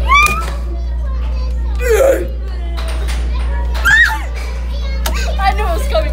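Young girls' voices giving three high-pitched cries, about two seconds apart, with chatter near the end, over background music.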